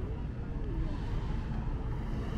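Steady low rumble of road traffic on a city street, with faint voices of passers-by.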